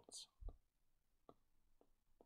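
Near-quiet pause with a short breath just after the start, a low bump about half a second in, and a few faint clicks of a stylus tapping on a drawing tablet as handwriting is added.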